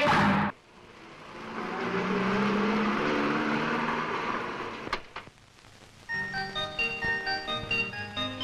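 A loud film-score chord cuts off abruptly half a second in. A car's engine then swells and dies away as it drives up and stops, with a sharp click near the five-second mark. From about six seconds a light tinkling melody begins, played on glockenspiel-like chiming notes.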